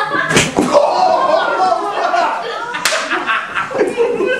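Two sharp whip strikes, one shortly after the start and another about two and a half seconds later, over voices.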